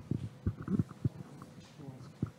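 Irregular low thumps and rumbles from a handheld microphone being handled.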